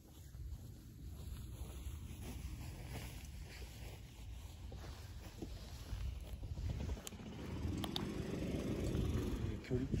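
Wind rumbling on the camera microphone, a steady low buffeting, with a couple of sharp clicks about seven and eight seconds in.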